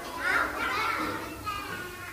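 A group of young children chattering and calling out all at once as they get up from their chairs, a general classroom hubbub of small voices.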